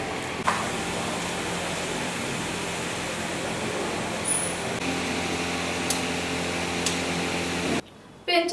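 Steady room noise in a hall: an even hiss with a low, steady hum, like fans or air conditioning, and a sharp click about half a second in. The hum's pitch pattern changes slightly near the middle, and the sound cuts off abruptly just before the end.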